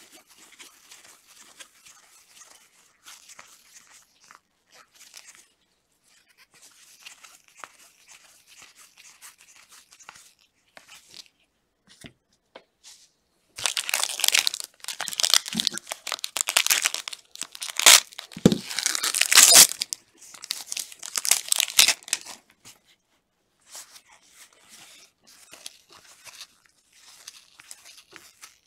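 Faint rustling of cards being handled, then a foil trading-card pack wrapper torn open and crinkled in loud crackly bursts for several seconds. The bursts are loudest toward the middle, and then it settles back to soft handling.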